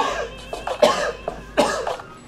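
A man coughing and choking: three harsh coughs, under a second apart, with music underneath.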